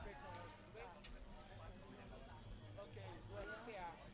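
Faint, distant voices over a steady low hum; the overall sound is very quiet.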